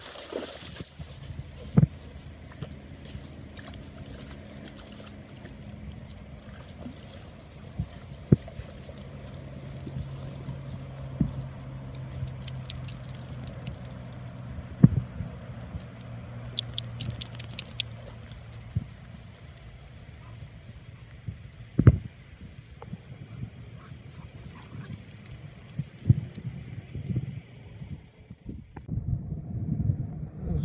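A low, steady engine-like hum runs under the scene, with scattered sharp thumps and light water sounds from dogs wading in the shallows at a pond's edge.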